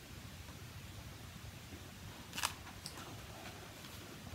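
Quiet room with a steady low hum; a large hardcover picture book being handled, with one short crisp rustle of paper about halfway through and a fainter one just after.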